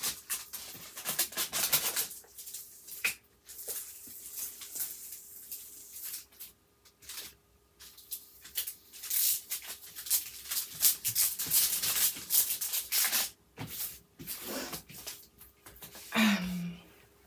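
Hands rubbing and smoothing the plastic cover film on a diamond painting canvas, working the creases out of it: a run of swishing strokes of plastic with brief gaps between them.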